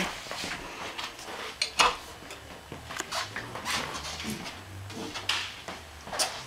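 Folding stem of a Bike Friday tikit folding bicycle being unfolded and handled: a series of sharp metallic clicks and knocks, the loudest about two seconds in.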